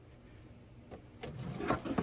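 Plastic pet carrier being handled and pulled out from under a wire-grid cage: a short run of scraping and knocking that starts about a second in, after a quiet start.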